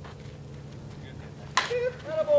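A slowpitch softball bat striking the ball: one sharp crack about one and a half seconds in, followed right away by a shout.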